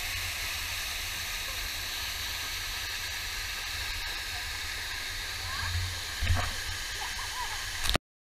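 Steady rushing of a waterfall pouring into its pool, picked up at the water's surface, with faint distant voices and a single thump about six seconds in.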